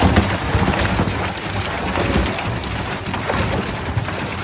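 Water splashing in a tote tank as a netful of freshly caught milkfish thrashes in it, with water spilling from the net. The splashing is loud and steady and made of many small splashes.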